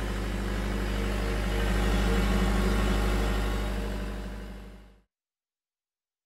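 Two Kubota V3800T diesel generator sets running steadily in parallel, sharing an electrical load, a continuous low hum that fades out near the end.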